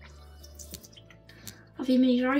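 Low room noise with a few faint short clicks, then a girl starts speaking near the end.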